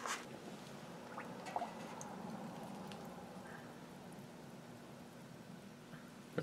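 Faint, occasional small drips and water sounds from a leather holster soaking in a pot of warm water, over a steady low hum.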